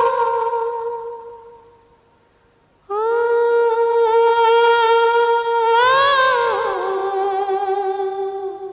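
A high voice humming long held notes of a melody, with nothing else beneath it. The first note fades away about two seconds in; after a short silence a new note enters, bends up and back down about six seconds in, and settles onto a lower note.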